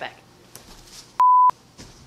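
A single short electronic bleep, one steady pure tone of about 1 kHz lasting about a third of a second, heard a little over a second in. It is a censor-style beep edited into the soundtrack, cut in with dead silence around it.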